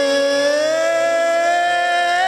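A man singing one long held note into a microphone, the pitch slowly rising, over a steady sustained chord from the band.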